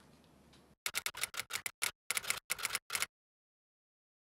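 An irregular run of about fifteen short, sharp clicks over a little more than two seconds, each cut off by dead silence, like a clicking outro sound effect added in editing.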